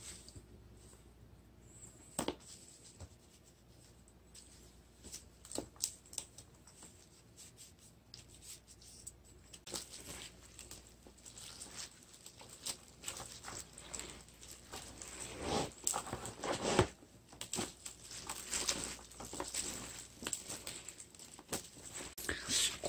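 Hand in a thin plastic glove tossing and kneading fresh winged spindle-tree leaves through thick red-pepper paste in a plastic bowl: wet rustling and crinkling of leaves and glove. A few separate taps come first, then from about halfway the mixing grows busier and louder.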